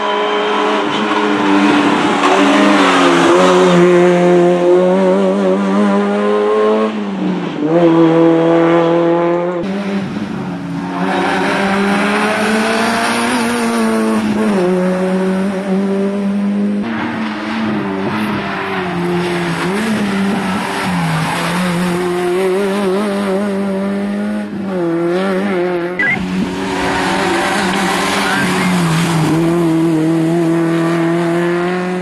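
Citroën Saxo N2 rally car's four-cylinder engine at full throttle, revving high, then dropping sharply on gear changes and lifts for bends before climbing again, several times over.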